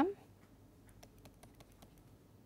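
Faint, quick clicks of a stylus tapping and writing on a tablet screen, a dozen or so small ticks spread over about a second and a half.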